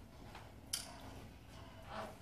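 Quiet room tone with a single short, soft click a little under a second in.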